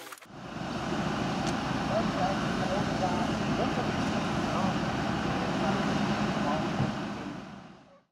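A vehicle engine running steadily, with faint voices in the background, fading out near the end.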